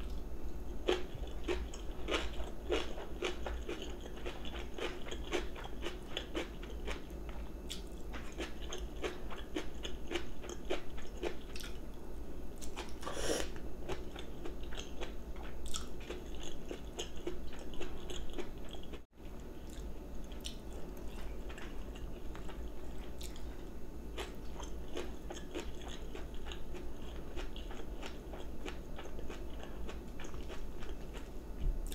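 A person chewing mouthfuls of crunchy food: a steady run of crisp crunches and bites, busiest in the first dozen seconds, with a brief break in the sound a little past halfway.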